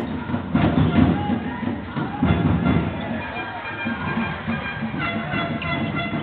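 Basketball game sound from an indoor arena: music over the hall's speakers and crowd noise, with a ball bouncing on the hardwood court a few times.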